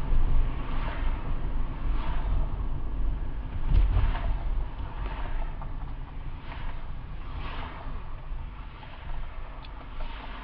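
A car driving on a city street, heard from inside the cabin: a steady low road and tyre rumble that swells most about four seconds in and then eases as the car slows in traffic.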